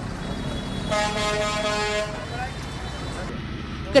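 A vehicle horn sounds one steady honk lasting just over a second, starting about a second in, over a low rumble of street traffic.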